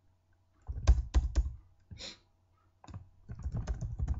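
Computer keyboard typing: a few separate keystrokes about a second in, then a quicker run of keys near the end.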